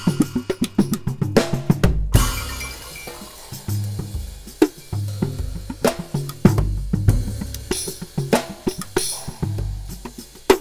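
Solo drum improvisation on a custom drum set, built on the paradiddle sticking and played with a stick in one hand and the bare other hand on the drum heads. Dense strokes with deep low-drum booms, and a cymbal-like ringing wash about two seconds in.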